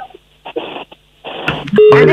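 A caller's voice through a telephone line: several short, hissy, muffled bursts with a thin, narrow sound, with a brief voiced fragment at the very start. About a second and a half in, a clear full-range studio voice cuts in with a steady tone under it.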